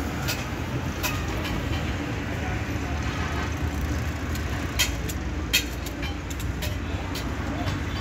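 Steady low rumble of road traffic and vehicle engines, with voices in the background and a few sharp clicks or knocks, the loudest about five and a half seconds in.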